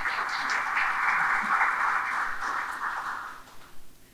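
Audience applause, a steady patter of clapping that dies away shortly before the end.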